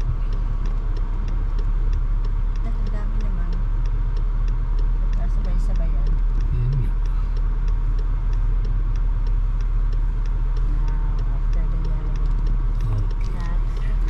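Steady low rumble of a car driving at road speed, the engine and tyre noise heard from inside the cabin.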